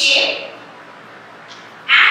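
Chalk scratching and squeaking on a chalkboard as letters are written: one short stroke at the start and a longer one beginning near the end.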